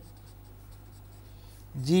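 A felt-tip marker writing on paper, faintly scratching out a few words.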